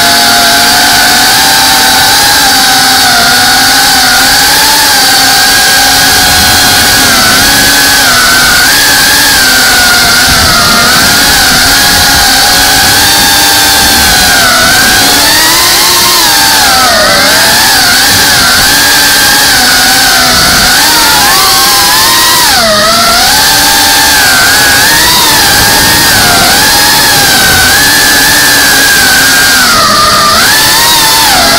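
FPV drone's brushless motors and propellers whining loudly, recorded on the drone itself. The pitch keeps rising and falling with the throttle as it manoeuvres.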